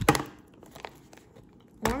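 Faint handling of a hard plastic toy capsule and its crinkly paper wrapper: a few light clicks and rustles as the capsule halves are pulled apart.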